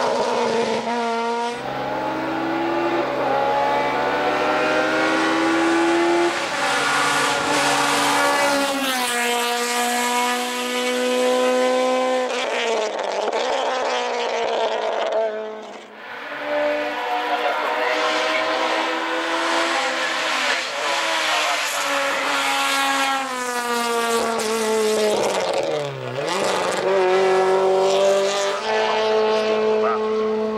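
Honda Civic hill-climb race car in the 1600 cc class accelerating hard uphill. The engine's pitch climbs through each gear and drops at every shift, and the sound briefly falls away about halfway through before the revving picks up again.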